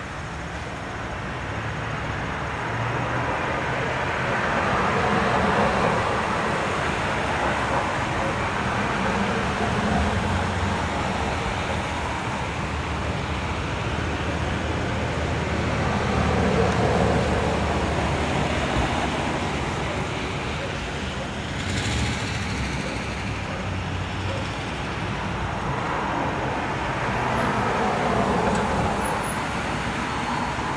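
Road traffic passing at night: several cars going by one after another, each a swell of tyre noise and low engine rumble that rises and fades, with a short sharp click about two-thirds of the way through.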